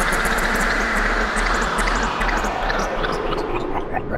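Sound-effect sting for an animated title card: a loud rushing whoosh with many small crackles running through it, thinning out near the end.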